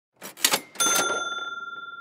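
Sound effect for an animated logo intro: a few quick clattering hits, then a single bell ding just under a second in that rings on, slowly fading.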